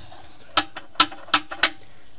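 Four light, sharp metal clicks from the hinged sheet-steel trapdoor baffles inside an engine sump being handled around the oil pickup, spread unevenly over a bit more than a second.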